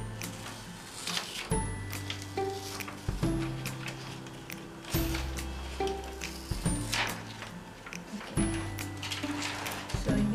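Background music with held notes and a low bass note about every second and a half. Over it comes a light crinkling of a clear plastic stencil sheet being peeled off cloth, a few times.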